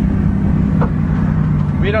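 Turbocharged drift car's engine running at a steady speed, heard from inside the cabin while driving.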